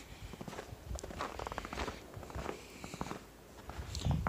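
Footsteps in snow: several uneven, irregular steps.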